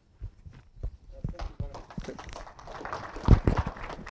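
Irregular knocks and thumps that grow denser and louder, the loudest a little after three seconds in, with voices in the room.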